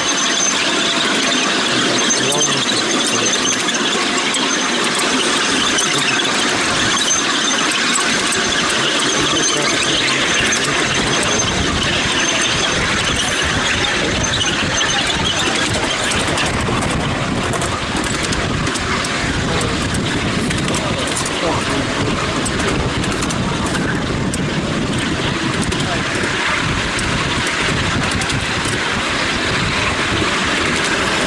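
Ride-on miniature railway train hauled by an Intercity 125 miniature locomotive, running along the track with passengers aboard: a steady, loud rolling noise of wheels on rails.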